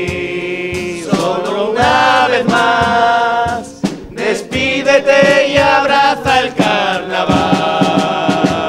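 A murga chorus of men singing together in full voice, with long held notes, accompanied by a strummed acoustic guitar.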